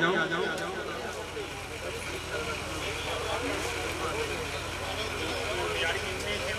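Background chatter of several people talking at once, with no single voice standing out, over a steady low hum.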